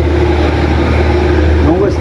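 A man's drawn-out hum held at one steady pitch, without words, over a steady low background rumble.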